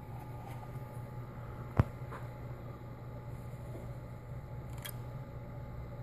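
Steady low electrical hum on a workbench, with one sharp click about two seconds in and a fainter click near five seconds.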